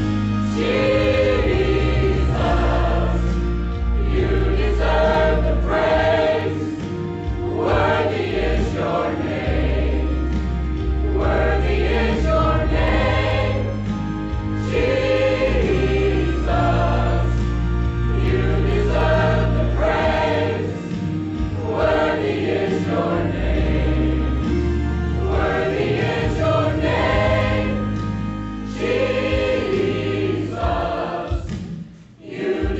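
Mixed choir of men's and women's voices singing a Christmas worship song, with long held low bass notes in the accompaniment beneath.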